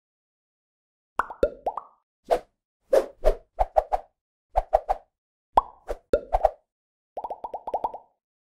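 Cartoon pop sound effects for an animated logo: short separate pops in small groups, some bending quickly down in pitch, ending in a fast run of about nine pops.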